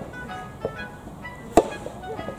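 Soft tennis racket striking the rubber ball in a groundstroke, a single sharp pop about one and a half seconds in, with a fainter knock a little after half a second. Background music plays throughout.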